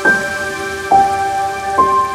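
Slow, soft piano music: three single notes struck about a second apart, high, then lower, then in between, each ringing on over a held low tone, with a steady hiss beneath.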